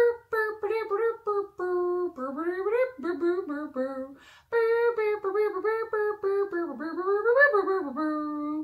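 A woman vocalizing a trumpet tune with her hands cupped at her mouth, imitating a trumpet in a quick run of short sung notes. It comes in two phrases with a brief pause about four seconds in.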